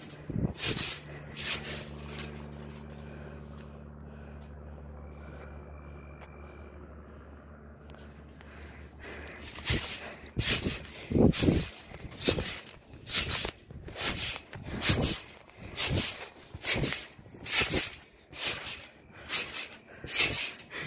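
A steady low hum for the first several seconds, then heavy, rapid breathing close to the microphone, about two breaths a second.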